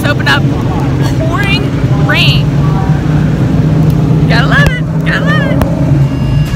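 Dirt-track race car engines running on the track during warm-up laps, a steady low drone that carries on throughout.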